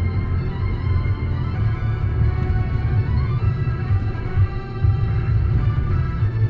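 Music with long held tones playing on a car radio, over the steady low rumble of the car on the road, heard inside the cabin.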